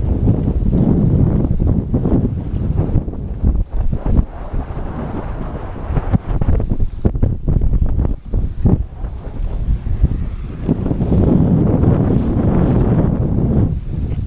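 Wind buffeting the microphone in gusts: a low rumble that rises and falls, strongest at the start and again near the end.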